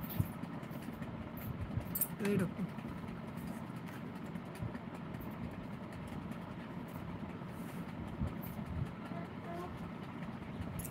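Steady low room hum, with a few soft taps and a brief murmured vocal sound about two seconds in.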